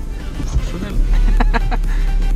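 Low rumble inside a car's cabin while it waits at a traffic light, growing louder about a second in as the camera is moved around, with a few short pitched sounds in the middle.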